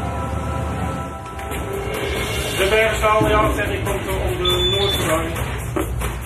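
A voice talking for a few seconds in the middle, over a steady low rumble and background music.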